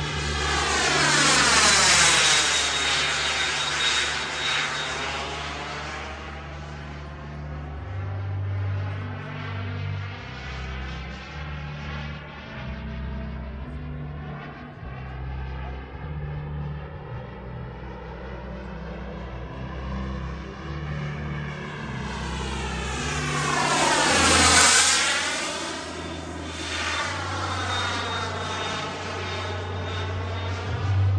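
Twin turbine engines of a 1/6-scale RC MiG-29 jet model making two loud passes, about two seconds in and again near 25 seconds. The jet noise swells and sweeps as it goes by, with a high turbine whine on top, and drops to a more distant rush between the passes.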